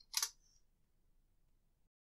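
A quick computer mouse click, two close clicks about a quarter second in.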